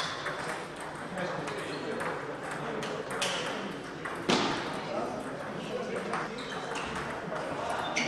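Table tennis rally: the ball clicking off the bats and the table in quick irregular strokes, with one louder knock about four seconds in, over background voices in the hall.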